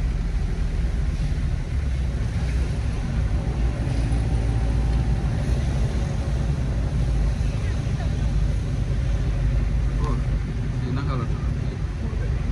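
Inside a moving van's cab: steady low engine and road rumble, with tyre noise from the wet road.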